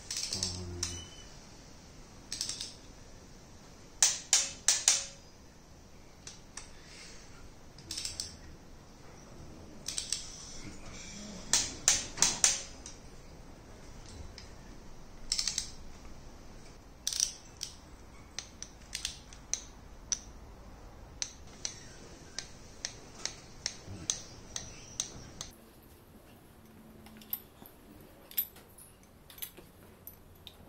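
Torque wrench clicking as the ARP head-stud nuts on LS3 cylinder heads are tightened in sequence to about 80 ft-lb. There are sharp metal clicks, some in quick runs of three or four and others single, and a click marks a nut reaching the set torque. Near the end only faint light ticks are left.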